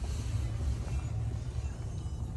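2009 Chevrolet Silverado 1500 engine idling, heard from inside the cab as a steady low hum.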